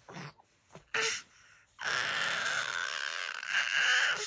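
Baby's breathy vocal sounds: two short breaths or gasps, then a long raspy, breathy sound lasting about two and a half seconds.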